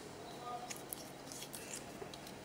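Silicone smartwatch strap being threaded through its buckle and keeper loop on the wrist: faint rubbing with a few small clicks.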